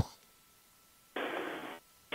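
A telephone line nearly silent, then a short burst of hiss about a second in that lasts about half a second, with a faint steady high tone underneath: a call breaking up on a poor signal.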